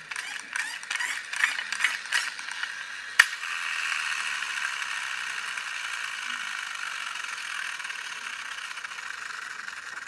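Friction-flywheel toy car's gear train: a few seconds of rapid, irregular clicking of the gears, a single sharp click about three seconds in, then a steady whirr of the flywheel and gears spinning on their freshly greased shafts, sounding a bit quieter.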